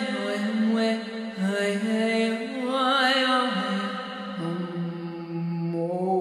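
A woman's wordless, chant-like singing: long held vowel notes that step from one pitch to another every second or so, a channelled 'sound frequency' vocalisation.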